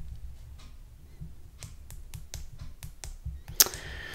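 About half a dozen light, irregular clicks and taps, the sharpest one a little before the end, over a low steady hum.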